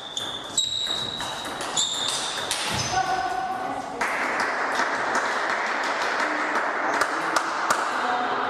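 Table tennis rally: quick clicks of the celluloid ball off paddles and table with short high squeaks, ending about two and a half seconds in. A voice calls out, then a steady din of voices fills the hall, with a few ball bounces near the end.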